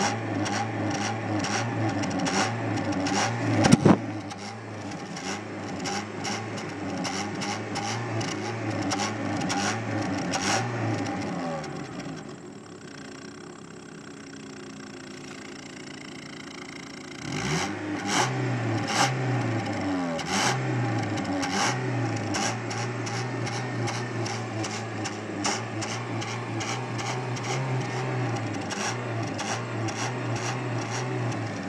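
Car exhaust at the tailpipe as the engine is revved again and again with the gas pedal, the revs rising and falling. About twelve seconds in it drops back to a quieter idle for about five seconds, then the revving starts again. There is a sharp thump about four seconds in.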